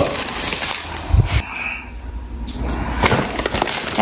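Plastic shrink wrap on a case of bottled water crinkling and rustling as it is pulled open and the bottles are handled, with a low thump a little over a second in.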